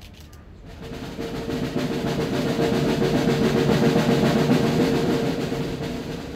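Drum roll that starts about a second in, swells to a peak in the middle and tails off near the end, with a steady held note beneath it.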